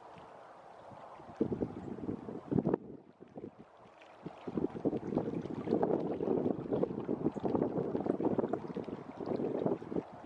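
Wind buffeting the microphone: a low, uneven rumble that comes and goes in gusts. It dips briefly about three seconds in, then blows harder through the second half.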